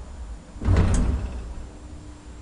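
Elevator door sliding with a clunk a little under a second in, followed by a low steady hum.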